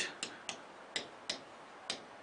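Pen tip clicking against a writing board as words are written, five light clicks at uneven spacing.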